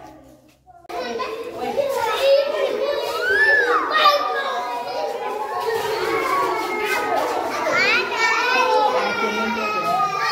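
A crowd of young children calling out and talking all at once, many voices overlapping close by. It starts after a near-silent gap of under a second at the start.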